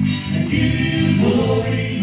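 Live gospel worship music: a small church band with acoustic and electric guitars, men and women singing together in sustained phrases.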